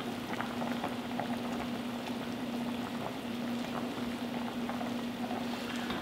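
Guinness-stout braising liquid with short ribs and vegetables at a boil in an uncovered enamelled cast-iron Dutch oven: steady bubbling with faint pops. A low steady hum runs underneath.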